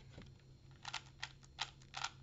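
Original Rubik's-brand 3x3 cube being turned by hand, its plastic layers clicking in a quick run of about seven clicks starting about a second in. The cube has just been lubricated.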